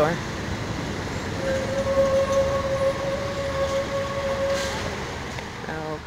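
Outdoor city-street background of traffic noise and fountain water spilling over a ledge, with a single steady tone held for about three seconds in the middle.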